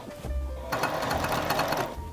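Juki TL-2010Q straight-stitch sewing machine running steadily as it stitches through fabric, starting up again after a brief pause at the very start.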